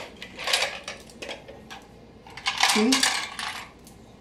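Small hard sewing-machine accessories, buttonhole presser-foot pieces, clicking and clattering as they are handled. There is a short burst about half a second in and a longer clatter from about two and a half seconds in.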